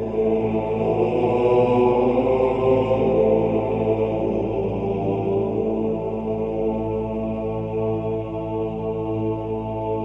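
Background music of Gregorian chant: voices singing long, sustained notes, with a new phrase swelling in right at the start.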